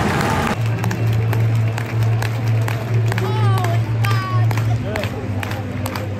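Football stadium crowd noise before kick-off, with music playing and scattered claps; the sound changes abruptly about half a second in, then holds a steady low drone with a few rising and falling voices over it.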